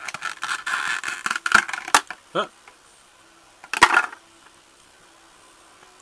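Clear plastic blister packaging crackling and crinkling as a small plastic toy figure is worked out of its tray. About two seconds later comes a single loud, sharp plastic click.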